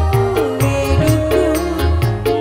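A woman singing a dangdut koplo song live into a microphone, her melody bending and wavering over a full band with a steady drum beat of about two strikes a second.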